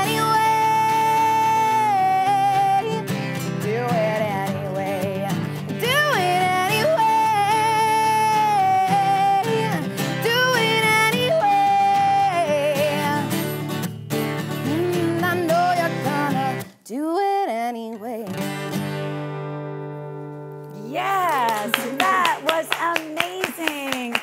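Woman singing to her own acoustic guitar. Her voice stops about two-thirds of the way through, and a final strummed chord rings out and slowly fades. Clapping and excited voices break out near the end as the song finishes.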